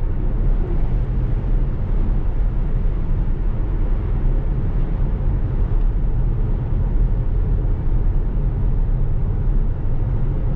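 Steady tyre and road noise inside the cabin of a 2015 Tesla Model S cruising at about 60 mph: a low, even rumble.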